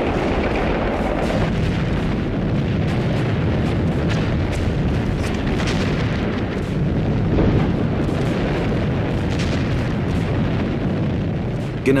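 Battle sounds of artillery fire and exploding shells: a dense, continuous rumble with many sharp gunshot cracks throughout.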